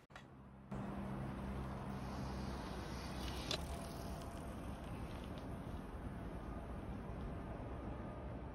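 A road bike rolls past a ground-level microphone on a tarmac path, with a brief tick about three and a half seconds in as it passes. Under it is a steady outdoor background with a low hum that fades in the first few seconds.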